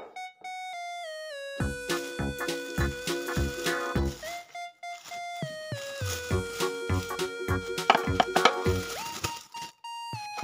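Background music: a bright keyboard-synth melody with gliding notes over a bouncy beat, dropping out briefly twice. A few short, sharp sounds come through the music about eight seconds in.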